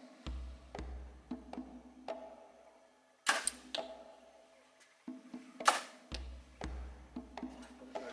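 Two compound bow shots, the string released about three seconds in and again about two and a half seconds later, each a sudden snap with a short ring after it. Quiet background music runs under them.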